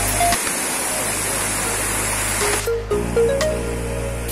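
Waterfall rushing over rocks under background music. The rush of water cuts off about two and a half seconds in, leaving the music.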